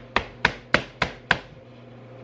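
Five sharp, evenly spaced taps on an empty Spam can, used as a musubi mold, while rice is pressed down and out onto the seaweed. The taps come about three a second and stop about a second and a half in.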